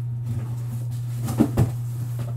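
Two short knocks close together about one and a half seconds in, from cardboard hobby boxes being handled and put back into their case, over a steady low electrical hum.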